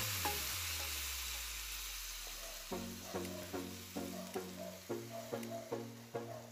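Coconut milk poured into a hot stainless steel pan of chicken pieces, sizzling with a steady hiss that fades as the pour ends. Plucked-string background music comes in about halfway through.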